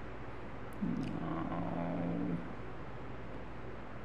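A man's voice humming a held, level "mmm" for about a second and a half, starting about a second in, with a couple of mouse clicks just before it, over a steady low background hum.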